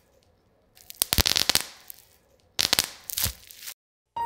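Electrical crackling sound effect of a flickering light bulb, in two sharp bursts that each fade away.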